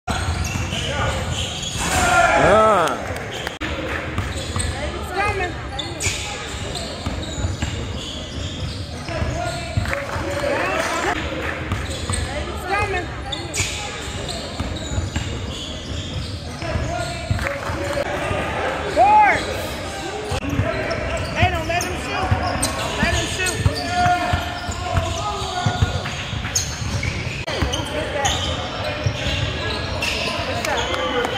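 Live indoor basketball play on a hardwood court: the ball bouncing, quick footfalls and short squeaks from sneakers, with players' voices calling out. The loudest moments come about two seconds in and again about nineteen seconds in.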